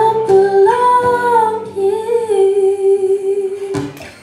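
A woman's voice singing long held notes with a slight waver and gentle pitch slides, over a softly ringing acoustic guitar. A single guitar strum comes near the end as the voice stops.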